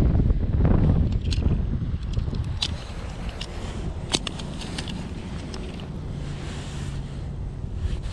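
Wind buffeting the microphone, heaviest in the first two seconds and then easing, with a scatter of short light clicks and knocks as a plastic fish lip-grip is handled and hooked onto a hand-held digital scale.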